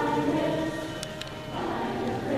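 Middle school choir singing in unison. One sung phrase ends about a second in, and after a short pause the next phrase starts near the end.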